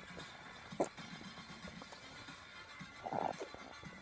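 Quiet room tone, with a faint click a little under a second in and a brief soft sound about three seconds in.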